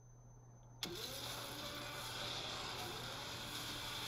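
Film trailer sound effects: a faint high-pitched ringing, then about a second in a sudden loud rush of hissing noise that holds steady for about three seconds.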